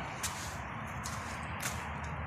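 Quiet outdoor bush ambience: a faint, even hiss with three brief, faint ticks.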